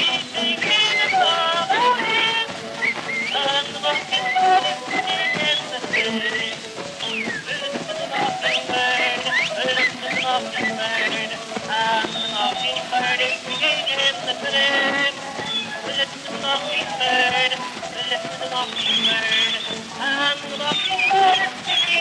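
A human whistler imitating mockingbird song, with quick trills, chirps and sliding notes high above a pitched instrumental accompaniment, on a hissy early acoustic recording from around 1900.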